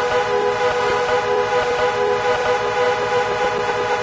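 Trance music in a breakdown: a sustained synth pad chord held without the kick drum and bass.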